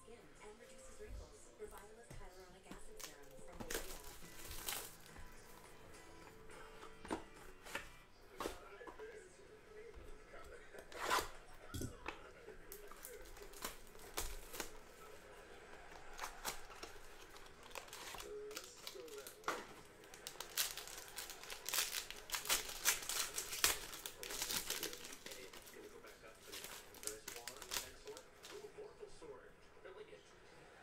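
Trading cards handled and flipped through by hand, with crinkling and tearing as a cardboard card box is opened. There are scattered sharp clicks, and a dense run of quick crinkles and clicks a little past the middle.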